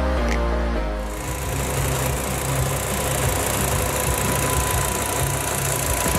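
Background music for about the first second, then the Volkswagen Passat's 2.5-litre five-cylinder engine idling, a steady low rumble under a constant hiss.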